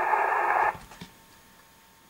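Shortwave receiver in upper-sideband mode: radio static hissing in the narrow voice passband, with a faint steady tone. It cuts off abruptly under a second in, leaving only a faint hiss.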